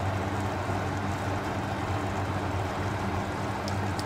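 Oil-and-curd masala of onions and spices simmering and sizzling steadily in a large aluminium pot, with a low steady hum underneath.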